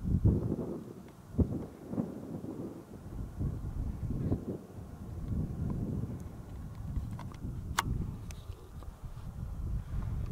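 Wind buffeting the microphone in uneven gusts of low rumble, with a sharp click about eight seconds in.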